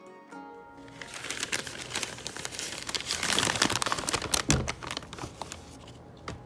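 A brown paper bag crinkling and rustling as it is handled and opened, a dense crackle that starts about a second in and dies away near the end, over background music.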